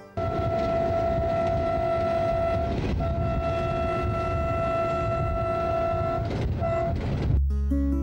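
A locomotive's horn blows two long blasts of about three seconds each, then a short toot, over the rumble of the passing train and the moving car. Instrumental music comes in near the end.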